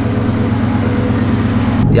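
Steady low rumble of a pickup truck's engine idling. Near the end it gives way to the drone of the cab on the move.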